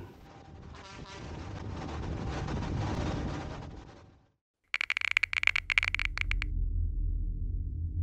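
Bus engine and road noise as the bus drives along, swelling and then fading out about four seconds in. After a moment of silence, an electronic outro sound effect starts: a flurry of rapid crackles for about two seconds over a low rumbling drone.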